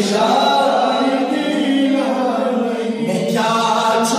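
Unaccompanied male chanting of a manqabat, a devotional praise poem, with no instruments. The voice line thins briefly just after three seconds in, then carries on.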